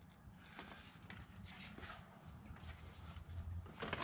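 Faint, scattered taps and clicks of hands handling a dial indicator on its stand while it is set to zero, over low garage room tone.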